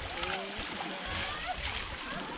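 Water splashing and pouring as it is thrown over an elephant standing in a shallow river, with people's voices in the background.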